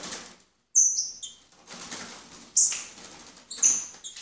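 A loose songbird's wings flapping in three short flurries as it flutters on and off a wire cage, with a few short, high notes among them.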